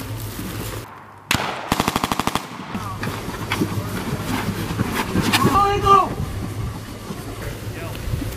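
A rapid burst of automatic gunfire from a rifle or machine gun, about a dozen evenly spaced shots in under a second, a little over a second in. A loud shouted voice follows about two-thirds of the way through.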